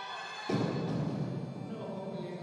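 A loaded barbell with bumper plates, 118 kg, dropped from the shoulders onto the lifting platform about half a second in: a sudden heavy thud that rumbles on, after a failed jerk. A sustained shout of voices runs up to the drop.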